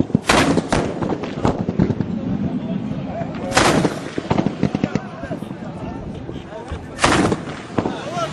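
Gunfire in a battle: three heavy, loud blasts, one just after the start, one in the middle and one near the end, among many scattered sharp shots.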